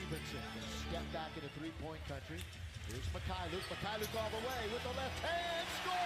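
NBA game broadcast audio playing at low level: TV commentators talking over arena crowd noise, with a basketball bouncing on the hardwood court.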